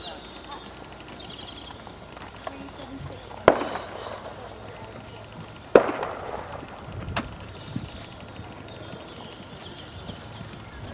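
Two sharp knocks a little over two seconds apart, each with a short ringing tail, then a lighter click, over faint bird chirps.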